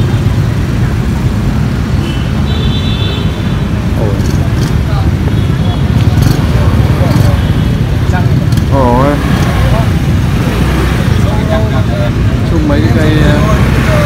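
Steady low rumble of street traffic with background voices of people talking nearby, and a few short high-pitched beeps in the first half.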